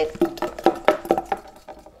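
A small candy rattling inside a cardboard gift box as the box is shaken: a quick, irregular run of light clicks that thins out and fades after about a second and a half.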